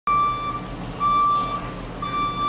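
Box truck's reversing alarm beeping as the truck backs up: two steady electronic beeps about a second apart, each lasting about half a second, with the truck's engine running low underneath.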